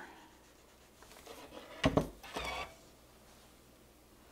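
An electric clothes iron set down with a single thud about two seconds in, followed by a brief rustle of fabric and freezer paper being handled. Before the thud, only faint room sound while the iron presses the freezer paper to the fabric.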